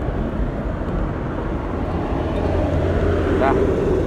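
Road traffic rumbling on the adjacent road; a vehicle passing swells louder in the second half, with a faint engine hum.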